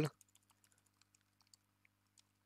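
Faint computer keyboard typing: a scattered run of light key clicks.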